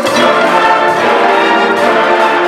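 High school concert band playing, the full brass section coming in with sustained chords at the start.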